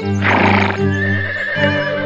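A horse whinny, short and fluttering, starting just after the toy horse is set down, over background music.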